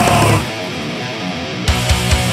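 Groove metal band recording: the full band with drums and bass cuts out about half a second in, leaving a guitar playing alone. The drums and full band crash back in near the end.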